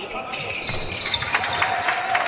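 Court sound of a live basketball game: the ball bouncing on the hardwood floor, with scattered voices in the gym behind it.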